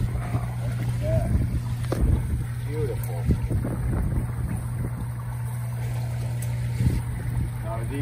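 Steady low hum of a water pump running, with water from a return jet churning and splashing at the surface.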